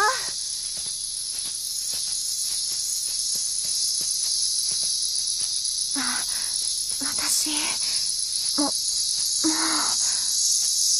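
A steady, high-pitched chorus of insects in a summer forest.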